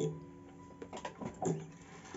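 Faint handling noise from a bandurria being lifted upright: a few light knocks and taps about a second in, over a faint ringing of its tensioned strings.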